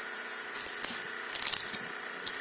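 Crisp fried pork rind (chicharrón) crackling as it is broken into pieces by hand, with a few short crackles about half a second in and again around a second and a half in, over a faint steady hum.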